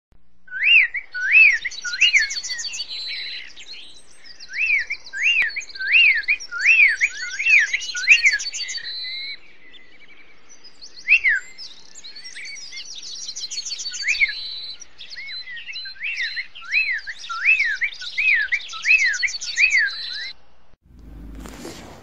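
A songbird singing in runs of short whistled notes that rise and fall, with quick higher trills between the runs. The song stops shortly before the end, and a low hum sets in.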